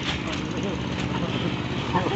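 An engine running steadily at a constant pitch, with faint voices in the background.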